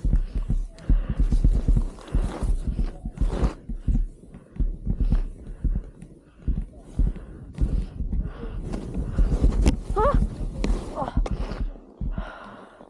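Wind buffeting the camera microphone, with irregular thumps and swishes of movement through powder snow. A short rising and falling vocal cry about ten seconds in.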